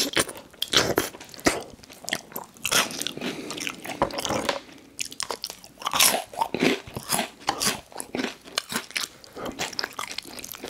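Close-miked chewing of a mouthful of spicy noodles and Hot Cheetos: wet, irregular crunches and mouth clicks.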